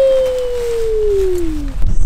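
A young child's voice holding one long drawn-out vowel that slowly falls in pitch and trails off near the end.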